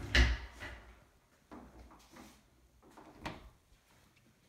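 A cabinet drawer under a countertop knocks shut just after the start, followed by a few fainter knocks.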